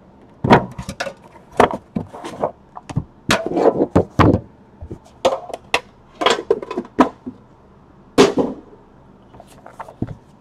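Trading-card boxes handled on a tabletop: an irregular run of knocks, taps and short scrapes as the boxes are slid, set down and picked up.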